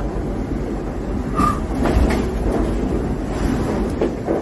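Steady rushing rumble of an IMOCA 60 racing yacht's hull driving through the sea, heard from inside the cabin, with a brief high tone about one and a half seconds in and a couple of knocks about two seconds in.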